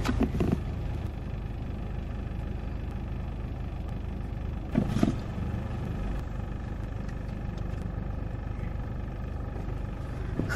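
Steady engine and road rumble of a moving car, heard from inside the cabin. Brief voice sounds come at the very start and again about five seconds in.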